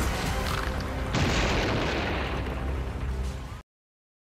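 A heavy crash sound effect over music. It hits about a second in and dies away over about two seconds, then the sound cuts off suddenly into silence near the end.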